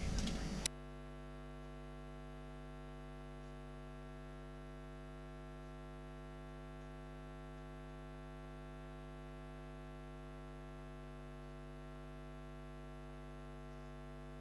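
The broadcast's track sound cuts off abruptly under a second in, leaving a steady electrical mains hum: a low, unchanging buzz with evenly spaced overtones.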